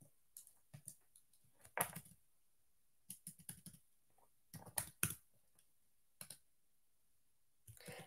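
Faint keystrokes on a computer keyboard, in short irregular clusters of clicks with pauses between, as a terminal command is typed and edited.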